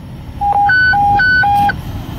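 Fire dispatch radio alert tone: five clean beeps alternating low-high-low-high-low, lasting about a second and a half. It is the attention tone that comes before an emergency-traffic evacuation order to all units.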